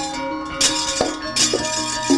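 Javanese gamelan playing steady metallophone tones, cut through twice by sharp metallic clashes of the dalang's kecrek (metal plates on the puppet chest), about half a second and a second and a half in, marking the puppet's movement.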